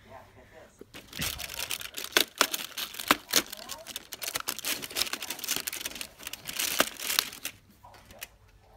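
Cardboard doors of a Milkybar chocolate advent calendar being torn and pulled open by hand, with foil wrappers crinkling. It is a dense crackle full of sharp snaps that starts about a second in and stops shortly before the end.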